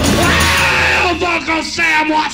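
Lo-fi garage punk rock recording: the band playing loud and dense, then from about a second in the backing thins and a man's voice yells out over it.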